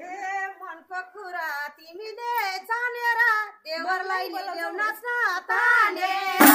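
Women's voices singing a Nepali Bhailo folk song, unaccompanied, in short high-pitched melodic phrases.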